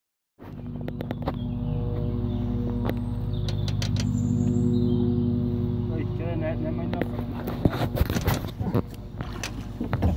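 A steady low motor drone that fades out about three-quarters of the way through, with a brief voice partway in and scattered clicks and knocks near the end.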